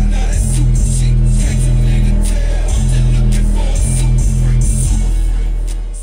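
Hip-hop track played loud through an Alpine Bass Line subwoofer in a carpeted enclosure, deep repeating bass notes dominating over the rest of the music. The music begins to fade out near the end.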